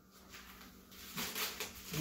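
Plastic wrapping around a bottle rustling and crinkling as it is handled and unwrapped, faint at first and picking up in the second half.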